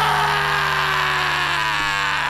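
A break in a folk-rock song: the beat drops out, and a steady low held note sounds under a sustained, even noisy wash with faint slightly falling tones.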